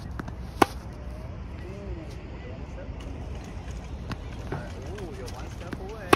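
Tennis racket striking a ball on a forehand: one sharp, loud pop about half a second in. A few fainter knocks follow later on.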